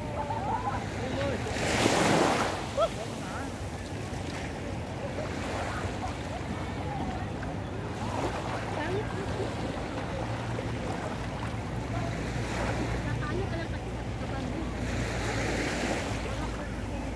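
Small waves washing onto a sandy beach, with a louder surge about two seconds in and another near the end, over a steady low rumble of wind and surf.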